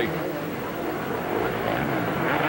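Supercross motorcycle engines running hard off the start, a steady, dense engine noise picked up by a rider's onboard helmet camera.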